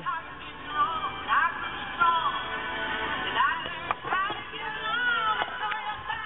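Music with high, wavering singing voices, sounding thin and muffled.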